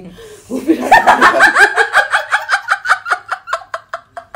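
Women laughing together: a long run of quick, high-pitched laughs starting about half a second in and fading off toward the end.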